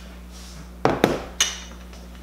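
Kitchen utensils clattering off-screen: a knock, a click, then a short ringing clink, three quick sounds about a second in.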